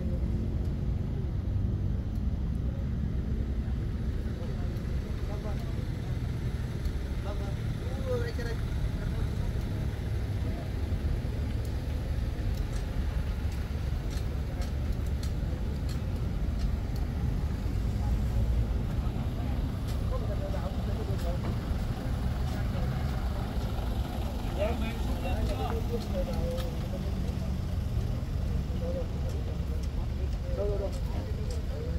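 Steady low outdoor rumble, with faint voices talking in the background about eight seconds in and again from about twenty seconds on.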